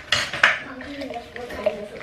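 Glass jug clinking and knocking as it is handled while tea bags are put into it, with a sharp clink about half a second in and a louder one at the end.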